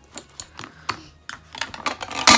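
Light, irregular clicks and taps, about half a dozen over two seconds: makeup items and a brush being picked up and handled.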